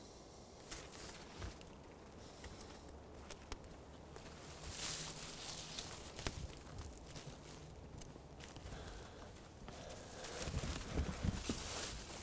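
Faint footsteps of a person walking over the forest floor through ferns and undergrowth, a little louder near the end.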